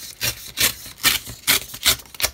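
Old book-page paper being torn along the edge of a steel ruler, in about five short rips roughly every half second.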